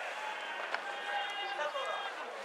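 Voices of players and spectators calling out across a baseball ground, over a steady background of crowd noise.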